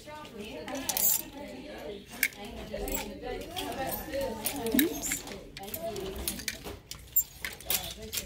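Clothes hangers sliding and clicking against each other along a clothing rack as garments are pushed aside, a quick irregular series of sharp clicks, with shoppers talking in the background.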